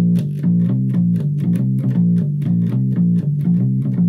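Electric bass guitar playing a low riff on G, B flat and C: third fret on the E string, first and third frets on the A string. The notes come in a steady, even stream of about five a second.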